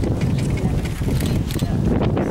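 Wind rumbling on the microphone over a horse cantering on dirt arena footing and taking a fence, with a few sharp hoof strikes after about a second.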